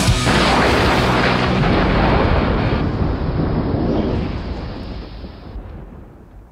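A loud, noisy crash with a deep rumble ends the song: it hits about a quarter second in, with low held notes under it for the first second and a half, then dies away over about five seconds.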